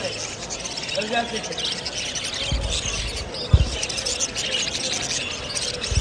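A cage full of young budgerigars chirping and chattering together. There is a low rumble about two and a half seconds in and a sharp low thump a second later.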